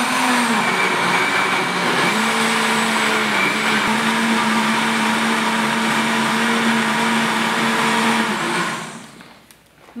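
Countertop blender running steadily, puréeing cooked pumpkin with its cooking broth into a thick soup. About a second before the end it is switched off and the motor winds down.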